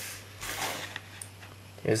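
Soft rustle of a plastic disc case being handled and swapped, over a low steady hum. A man's voice starts just before the end.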